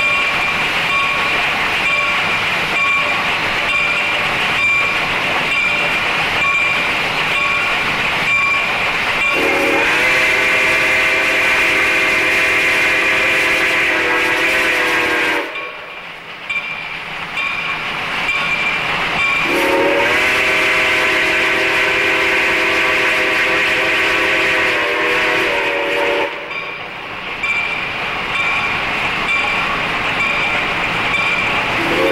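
Reading & Northern No. 425, a Baldwin 4-6-2 steam locomotive, running past with a steady rhythmic beat, then sounding two long blasts on its steam whistle, each about six seconds, starting about ten and about twenty seconds in.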